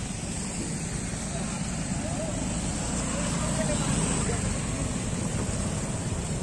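Steady noise of motor scooter engines running, with faint indistinct voices.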